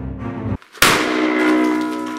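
Music stops abruptly and, after a short silence, a sudden loud bang of an explosion hits under a second in. Ringing tones linger after the bang.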